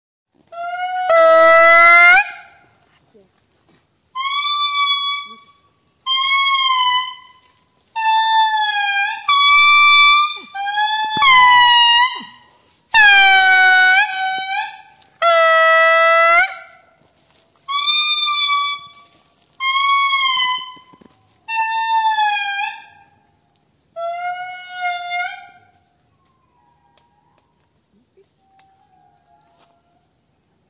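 Indri singing: a series of about a dozen loud, wailing, horn-like notes, each a second or two long with short gaps between them, each note bending in pitch. The song grows weaker over the last few notes.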